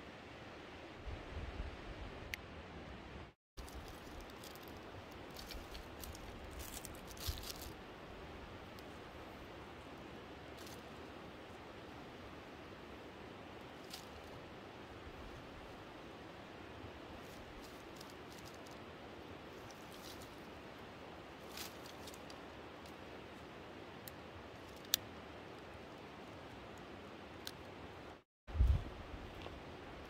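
Faint steady hiss of outdoor background noise, broken by scattered soft clicks and rustles, with a low rumble in the first few seconds and one dull thump near the end.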